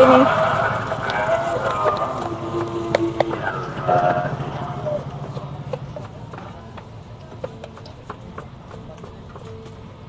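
Background voices that fade over the first few seconds, with scattered light clicks and taps of a spoon against a metal multi-hole egg pan as filling is spooned into the holes.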